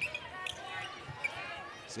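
A basketball bouncing on a hardwood court during live play, a few separate bounces.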